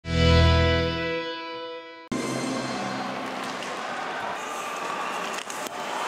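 A short musical sting with a deep tone, the loudest sound here, fades over about two seconds. It then cuts abruptly to steady crowd noise in an ice hockey arena.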